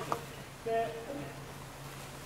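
Brief, faint voices over a steady low hum.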